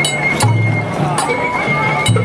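Festival float hayashi music: a high bamboo flute holds one steady note while sharp metallic strikes come about every half second, over crowd voices. A low rumble comes in about half a second in.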